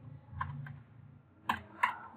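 Computer keyboard keystrokes as typed text is erased: a few soft key taps, then two sharper key presses near the end.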